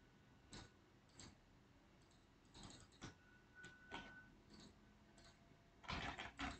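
Faint, irregular clicks from a computer mouse and keyboard, spaced about half a second to a second apart, with a quick cluster of clicks near the end.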